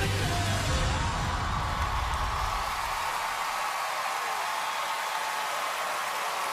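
Backing music with a heavy bass beat, ending about halfway through, over a large audience cheering steadily, which carries on after the music stops.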